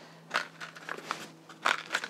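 Paper seed packet crinkling as it is handled, in a few short rustles, the loudest about a second and a half in.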